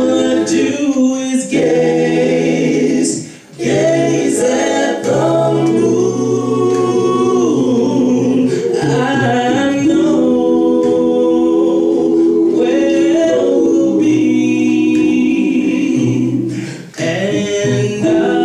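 Male a cappella vocal group singing in close harmony through microphones, holding sustained chords, with brief breaks about three seconds in and just before the end.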